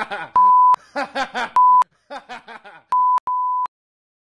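A steady single-pitch censor bleep sounds four times, each under half a second, with the last two close together. It cuts into a puppet character's voice, blanking out swearing.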